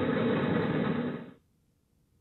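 A steady rumbling noise that cuts off abruptly about one and a half seconds in, leaving near silence.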